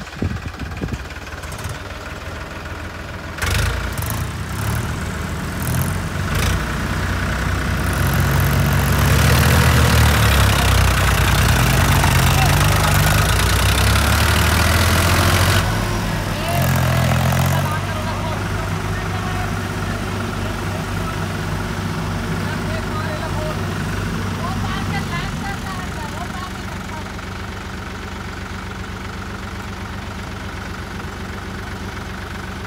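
Powertrac tractor's diesel engine revving hard under load as the tractor strains in deep mud. The engine note climbs a few seconds in and is loudest for several seconds, then drops back after a brief second surge to a lower, steadier run for the second half.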